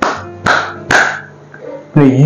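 Three hand claps about half a second apart, the three-beat 'thank you clap', over soft background music.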